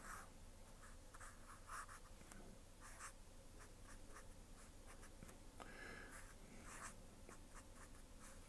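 Black felt-tip marker drawing on paper: faint, quick, irregular scratchy strokes of the tip as small shapes are filled in.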